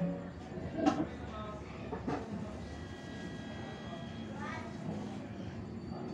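Faint, indistinct background voices over a steady household hum, with a few short soft knocks, the loudest about a second in.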